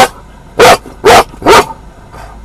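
A dog, likely a police K9 search dog, barking loudly four times in quick succession, each bark with a brief rise and fall in pitch.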